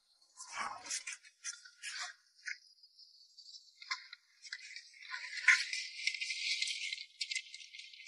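Small crabs and shrimp with wet weed rattling and scraping in a red plastic scoop and basin as the catch is sorted, in scattered clicks at first and a denser crackling run from about five seconds in.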